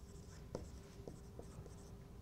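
Dry-erase marker writing on a whiteboard: faint, short squeaks of the felt tip in quick, broken strokes, with a few small taps as it touches down.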